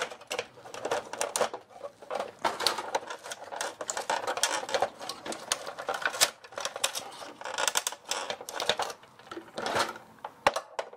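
Hard plastic parts of a stripped-down inkjet printer chassis clicking and rattling as they are handled by hand: a dense, irregular run of small clicks and clatters.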